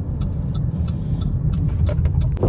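Car driving at low speed, heard from inside the cabin: a steady low rumble of engine and tyres with a few faint ticks.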